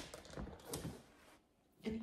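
Cross-stitch linen being taken out of an embroidery hoop: a sharp click, then a few lighter clicks and rustles of fabric within the first second.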